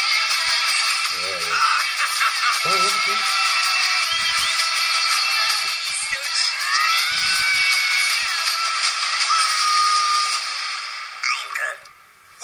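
Movie trailer soundtrack playing back: music with voices in it, which drops away sharply near the end.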